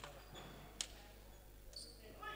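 Faint futsal court sounds: a couple of short high squeaks from shoes on the wooden floor, and a few sharp knocks, the loudest just under a second in.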